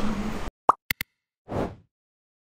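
Edited-in sound effects over dead silence, after the street sound cuts off half a second in: a short pop, two quick clicks, then a brief whoosh about a second and a half in.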